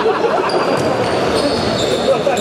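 Echoing sports-hall sound of a futsal game in play: the ball being dribbled and bouncing on the hard floor, with players' voices.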